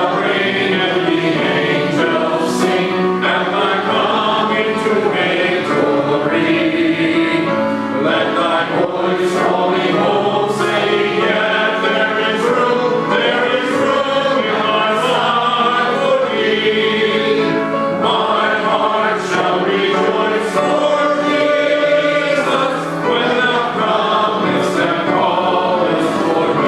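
Voices singing a hymn together, accompanied by piano.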